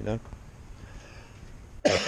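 A man's last word trails off, followed by a lull. Near the end he gives a sudden harsh cough, clearing his throat.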